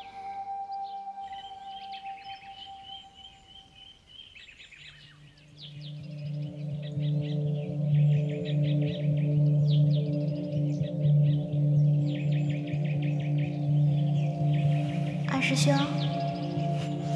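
Small birds chirping repeatedly over a drama soundtrack of sustained droning music, which swells in loudly from about five seconds in after a quieter held tone fades out. A short whooshing sweep comes near the end.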